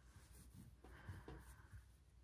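Near silence, with a faint rustle of hands handling fabric and pulling a pin out of it.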